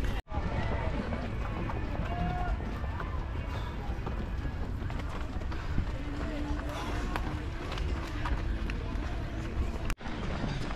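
A runner's footfalls on asphalt, heard over a steady low rumble, with faint voices of other runners and spectators in the background. The sound cuts out briefly near the start.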